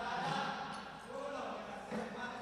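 Rapa'i frame drums struck together by a row of seated performers, with a chanted vocal line over the beats.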